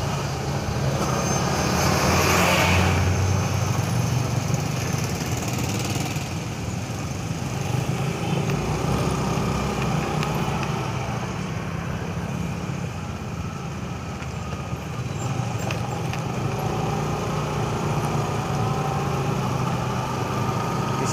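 Motorcycle engine running steadily at low speed in slow traffic, heard from the rider's seat. A louder rush of noise comes about two seconds in.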